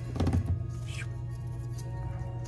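Soft background music with steady held tones, and a few low knocks a quarter of a second in from hands handling paper and a glue bottle on a wooden table.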